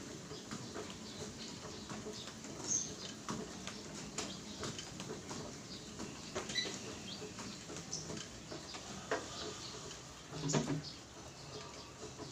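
Home treadmill in use: light, irregular knocks and clicks of feet and the moving belt over a faint steady hum.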